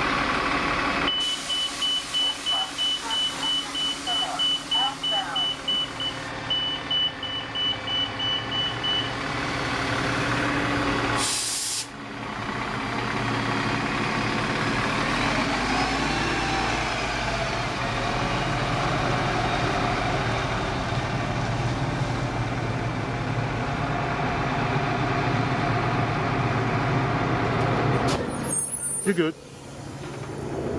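Transit bus engine running steadily as the bus pulls away. A rapid high electronic beeping sounds for the first several seconds, and a short burst of air hiss comes about midway.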